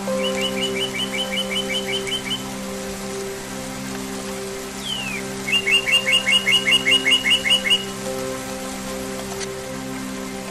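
Soft sustained music chords with a songbird singing twice over them. Each phrase is a downward-sliding whistle followed by a fast run of about a dozen repeated chirps, and the second phrase is louder.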